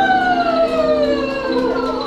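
One long vocal note sliding slowly down in pitch over a held piano chord.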